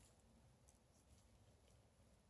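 Near silence: room tone, with two or three very faint ticks.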